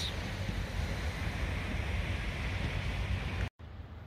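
Steady outdoor noise of wind and sea surf, with wind rumbling on the microphone. It breaks off sharply about three and a half seconds in.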